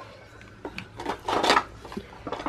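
Light handling noise from small plastic and cardboard containers being moved about: a couple of soft clicks and a short rustle about a second and a half in.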